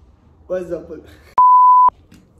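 A single loud, steady pure-tone beep lasting about half a second, switching on and off abruptly, edited in over the soundtrack as a bleep effect.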